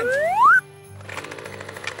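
A cartoon-style rising whistle sound effect that sweeps sharply up in pitch over background music and cuts off abruptly about half a second in, leaving the music much quieter.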